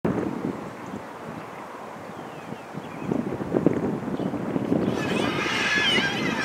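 Wind buffeting the microphone in uneven gusts. About five seconds in, a babble of many distant voices rises over it.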